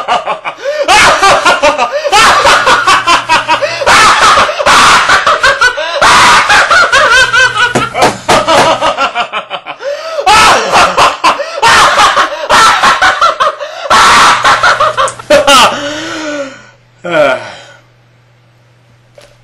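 A man laughing loudly and at length in repeated bursts of laughter, trailing off near the end.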